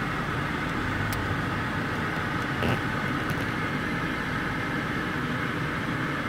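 Steady noise inside a car's cabin with its engine running, in slow traffic. A faint click comes about a second in.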